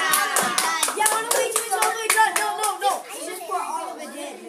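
A class of children clapping and calling out together, many voices overlapping, dying down near the end.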